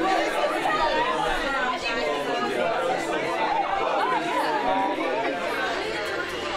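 Crowd chatter: many people talking at once, with overlapping voices and no single one standing out.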